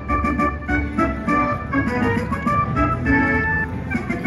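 Buffalo Gold slot machine's big-win celebration music: an electronic organ-like tune over a fast, even high ticking, playing while the win meter counts up.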